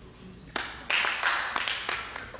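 A short, scattered burst of audience handclapping in a hall, starting about half a second in with a few irregular sharp claps and thinning out near the end.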